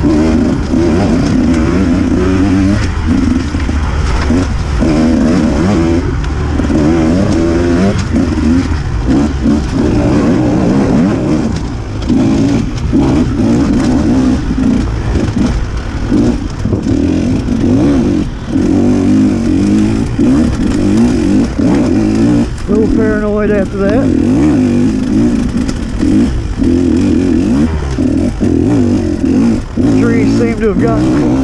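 Off-road dirt bike engine running hard under racing throttle, its note rising and falling as the rider gets on and off the gas, with a few brief let-offs. Heard close-up from the rider's onboard camera.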